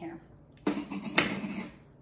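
Plastic measure-mix-and-pour container and its lid being handled, clattering for about a second with a sharp click partway through.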